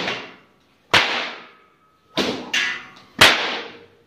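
A long Ponorogo pecut (cemeti whip) cracking four times: one crack about a second in, a quick pair about two seconds in, and the loudest just after three seconds. Each crack trails off in a short echo.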